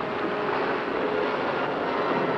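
Ocean surf breaking on a beach: a steady, loud wash of noise.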